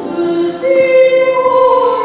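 Church choir singing a hymn in long held notes, stepping up in pitch a little over half a second in.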